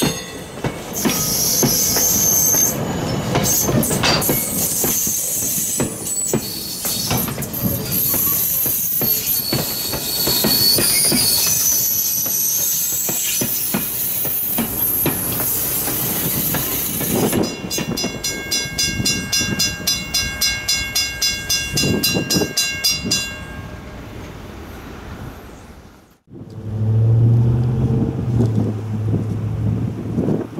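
Passenger coaches of a train rolling past close by on a curve, the steel wheels squealing against the rails with rail-joint clicks, then a stretch of rhythmic squealing pulses, about three a second, as the last coach goes by. After a short break near the end, a low, drawn-out tone sounds from afar.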